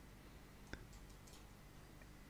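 Near silence: faint steady room hum with a single soft click a little before the middle.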